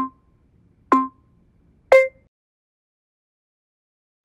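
Workout app's countdown timer beeping: three short electronic beeps a second apart, the last one at a different pitch, marking the end of the set.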